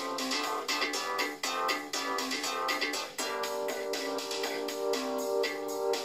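Synthesizer music playing back from a work-in-progress cover arrangement in Reason: quick repeated notes, joined by sustained chords about three seconds in.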